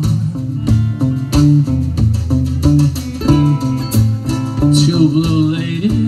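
A live band playing an instrumental stretch of a song between sung lines, guitar to the fore over a steady drum beat.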